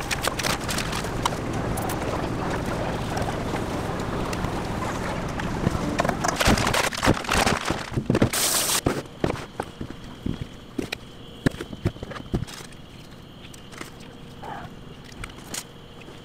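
Clatter and handling noise from food prep: a dense background with many short clicks for the first half, then a sudden drop to a quieter background about nine seconds in, with scattered separate clicks and knocks.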